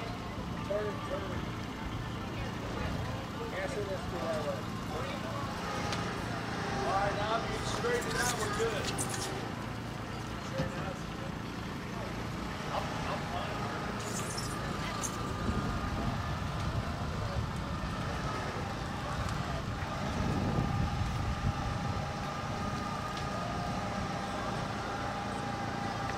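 People talking in the background over a steady low mechanical hum, with a few brief clicks about a third and halfway through.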